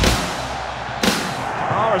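Two sudden hits about a second apart, each trailing off in a fading rush of noise, while the rock music drops out. A commentator's voice starts near the end.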